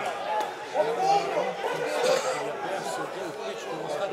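Several footballers' voices shouting and calling to each other across the pitch, overlapping. They have the open, echoing sound of an almost empty stadium.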